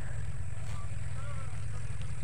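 Steady low wind rumble buffeting the microphone in open fields, with a few faint, high, short chirps in the first second or so.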